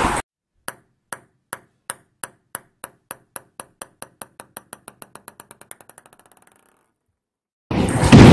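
A table tennis ball dropped onto a hard surface, bouncing many times, the bounces coming faster and fainter until it settles after about six seconds.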